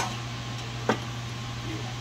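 A single sharp click about a second in, as a dog-leash snap hook is handled on a mower deck's blade-belt tensioner spring, over a steady low hum.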